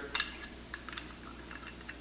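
A few light metallic clicks and ticks from the Mossberg 500 shotgun's elevator lift arms being squeezed and their pins fitted into the holes of the receiver, a cluster just after the start and another about a second in.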